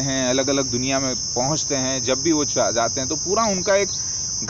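A steady, high-pitched insect drone, unbroken, under a man speaking.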